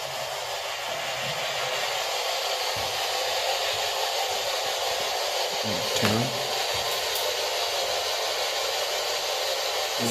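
A steady hiss that grows slowly louder over the first few seconds, with a brief faint sound about six seconds in.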